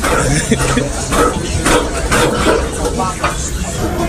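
Steady room noise with indistinct voices talking in the background.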